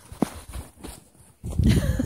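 Footsteps and body movement in deep, soft snow: faint scattered crunches at first, then from about one and a half seconds in a heavier, low rumbling flurry of thuds as a child plunges into a snowdrift. A short brief vocal sound comes near the start.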